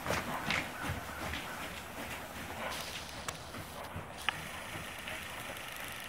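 Muffled hoofbeats of a horse moving on soft indoor-arena footing, over a steady background hiss, with a few isolated sharp ticks.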